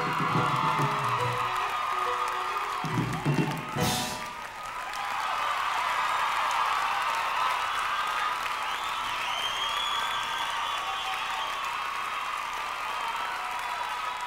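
A rock band's closing notes under audience cheering, ending on a loud final drum-and-cymbal crash about four seconds in. Then the audience keeps applauding and cheering, with whoops.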